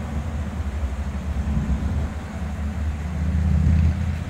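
A steady low rumble with nothing higher-pitched over it.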